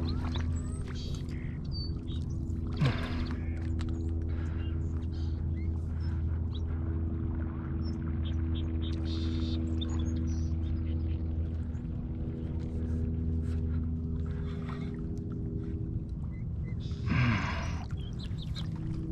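Hooked carp splashing at the surface during the fight, a few short splashes with the loudest about three seconds in and another near the end, over background music of held, slowly changing chords.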